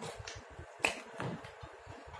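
A single sharp click about a second in, with a few fainter taps and rustles of paper around it, as a marker pen is picked up and brought to the page.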